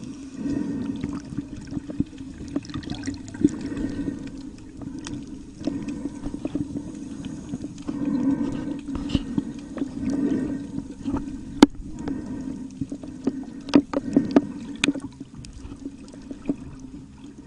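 Water sloshing and gurgling close around the microphone, over a steady low hum, with scattered sharp clicks and knocks; the sharpest click comes a little past the middle.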